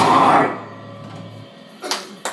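Live punk rock band with drums and electric guitars cutting off at the end of a song about half a second in. A low hum lingers for about a second, then a short sharp sound comes near the end.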